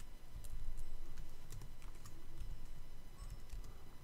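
Typing on a computer keyboard: a few light, scattered keystrokes.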